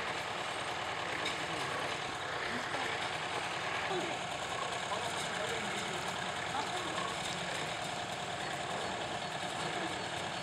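An engine running steadily, with people talking in the background.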